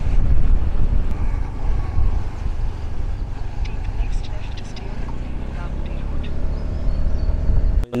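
A motorbike running as it is ridden along a road, with a steady low rumble of engine and wind buffeting across the microphone. The sound cuts off abruptly just before the end.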